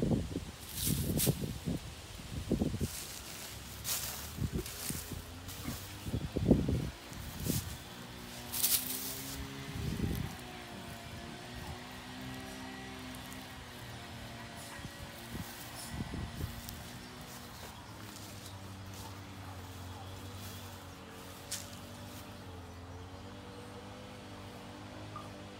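Dry straw and dead leaves rustling and crackling in irregular bursts as a dog roots about in them, then from about eight seconds a steady wavering insect buzz that carries on to the end.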